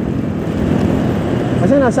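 Steady road and traffic noise while riding a Honda Click 125 scooter through city streets. A held sung voice comes in near the end.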